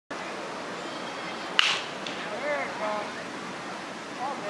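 A baseball bat striking a pitched ball once, about a second and a half in: a sharp crack with a brief ring.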